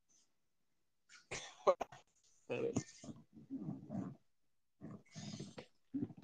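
About a second of silence, then several short wordless vocal sounds, some pitched and some breathy.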